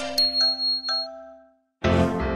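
Cartoon sparkle chime: a few bell-like dings with a thin high shimmering tone, ringing out and fading to a brief silence. Music starts just before the end.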